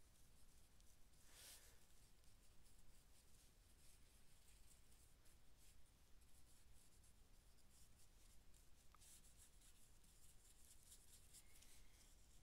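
Very faint scratching of a Derwent Inktense pencil shading on journal paper, layering color.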